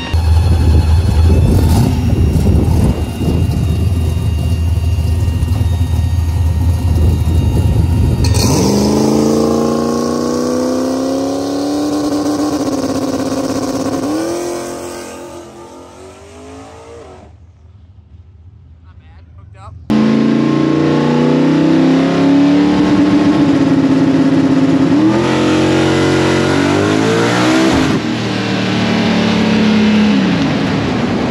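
Turbocharged Mustang drag car with a new 88mm Precision turbo making a pass: a deep engine rumble at first, then about eight seconds in the engine note climbs and drops back at each gear change while fading away into the distance down the track. After a sudden cut it is loud again, the engine rising through the gears twice more.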